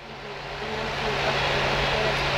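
Steady rushing background noise with a low hum, swelling over the first second and then holding level.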